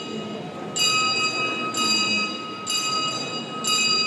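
A bell rung during the Orthodox Easter Resurrection service, struck about once a second with four strokes, each ringing on into the next.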